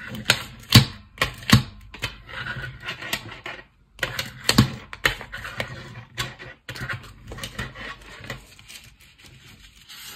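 A pencil pressed and rubbed along the fold of a folded paper plate to crease it: irregular scraping with sharp clicks.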